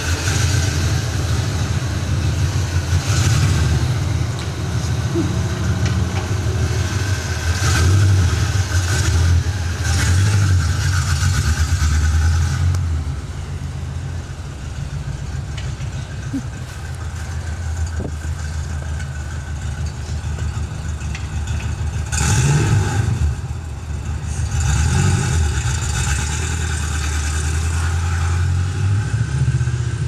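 Ford Mustang 5.0's V8 engine running and revving several times as the car pulls away, then growing quieter as it drives off, with two more brief swells of engine sound later on.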